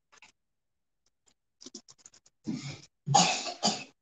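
A person coughing, two or three loud rough coughs near the end, after a few faint light ticks.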